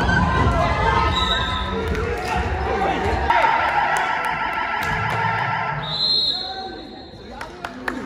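Indoor basketball game on a hardwood court: the ball bouncing and players' voices calling out, echoing in the gym hall. A brief high steady tone sounds near the end.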